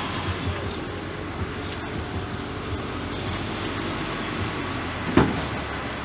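Steady low drone of distant engines, typical of heavy construction machinery running, with a single sharp knock about five seconds in.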